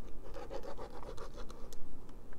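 Metal tip of a precision screwdriver's tri-wing bit scratching and prodding over the sticker label on the plastic back of a plug-in power meter, feeling for a screw hidden under the label. The sound is a run of small, irregular scratches and ticks.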